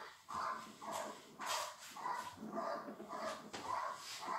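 A dog barking in a rapid, regular series, about two barks a second, at a motionless helper in a protection suit during protection training.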